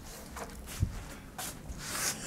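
Faint handling noise, a few soft knocks and rustles, as a cured grout test strip is reached for and picked up.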